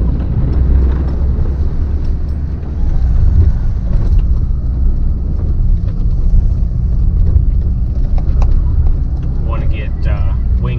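Ram 2500 pickup truck running under load while pushing snow with a V-plow, a loud steady low rumble. About three seconds in the sound changes to the more muffled rumble heard inside the cab.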